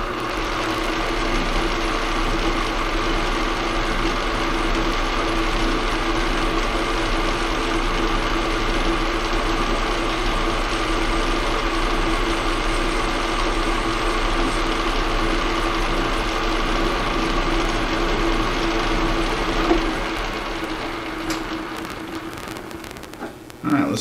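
Metal lathe running steadily with a brass workpiece spinning in the three-jaw chuck during a light finishing cut: a constant motor-and-gear whine with a low hum. Near the end the sound dies away over a few seconds as the spindle winds down.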